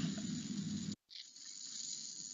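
Faint steady hiss of a narration recording's background noise between sentences. It cuts out completely for an instant about a second in, where one slide's recorded audio ends and the next slide's begins, then carries on.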